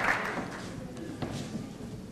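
Audience applause fading out, leaving quiet room noise with a single faint tap a little after a second in.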